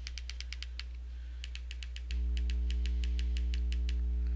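Electrical mains hum, jumping up louder a little after two seconds in, with a rapid run of light, evenly spaced clicks, about eight a second, over it.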